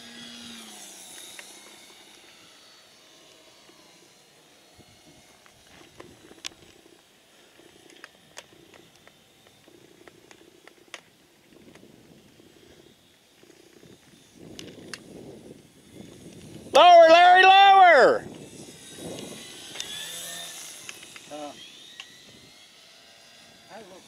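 A radio-controlled model airplane's motor and propeller droning faintly as it passes, swelling near the start and again about twenty seconds in. About seventeen seconds in, a person gives one loud, drawn-out "whoo" that rises and falls in pitch.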